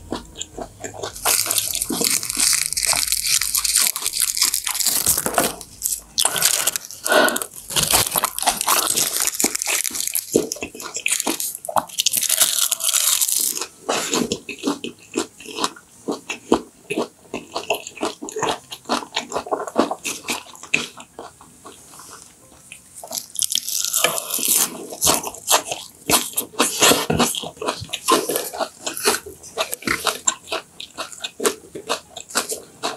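Close-miked chewing of raw yellowtail sashimi wrapped in laver: crisp crackling of the seaweed and wet mouth sounds, a rapid run of short clicks that drops quieter for a few seconds past the middle.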